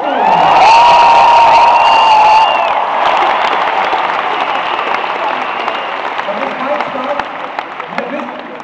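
Live audience cheering and applauding: a loud held cheer over the first two and a half seconds, then clapping that slowly dies down.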